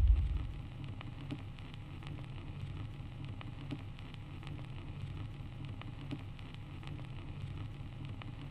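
A deep boom from an outro logo sting fades out in the first half second. It leaves a low steady hum with faint scattered crackles.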